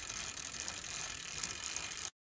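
Ratchet-like clicking sound effect of turning gears, a fast, even run of small mechanical clicks that cuts off suddenly at the end.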